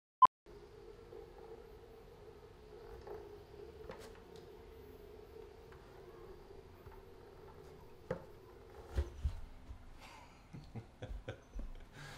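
A short, sharp beep right at the start, then the faint steady hum of a Onewheel Pint's electric hub motor holding the board balanced under the rider. The hum stops about eight seconds in, followed by a few thumps and knocks as the rider gets off the board onto the carpet.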